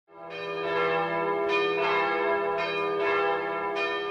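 Bells ringing as an opening theme. The sound fades in at the start, and the bells are struck again roughly once a second, each strike ringing on over a steady low hum.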